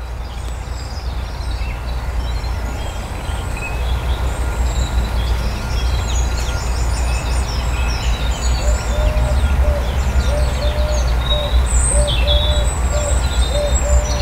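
Small garden birds chirping and calling again and again over a steady low rumble. From about halfway through, a short low note repeats roughly once a second.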